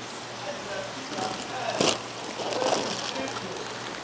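Steady hiss of running water, with a brief splash of water a little under two seconds in, under faint voices.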